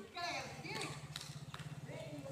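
Indistinct voices talking, over a low, rapid, even pulsing that starts a moment in.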